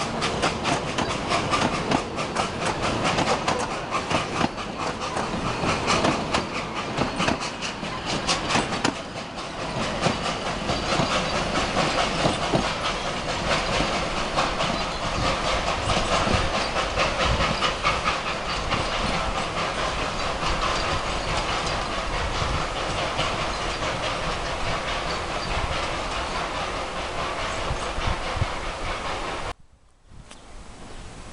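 Narrow-gauge steam train pulling away: a dense run of sharp beats from the working locomotive and wheels for the first several seconds, then a steady rumble and clatter of carriage wheels over the rail joints as the carriages roll past. The sound cuts off abruptly near the end.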